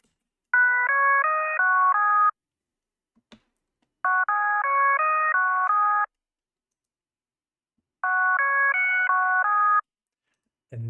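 Serum software-synth pad-lead patch playing the same short phrase of stepping chords three times, each phrase about two seconds long with a pause between. The fundamental is cut away with a low-cut, so only the upper harmonics sound, giving a ghost fundamental an octave below what is heard.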